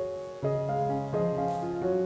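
Soft piano music: a few chords struck in turn, each fading away before the next.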